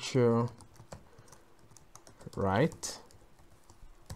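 Computer keyboard keys clicking faintly as code is typed, scattered keystrokes between two short bits of a man's voice.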